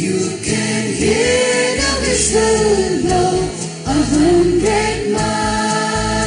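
Mixed choir of men and women singing in harmony into stage microphones, with several held and gliding vocal lines over sustained low notes.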